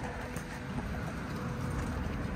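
Steady outdoor noise with a fluctuating rumble in the low end: wind buffeting the microphone.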